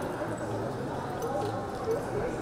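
A murmur of voices with a Quarter Horse's hoofbeats in the arena sand as it walks into the cattle.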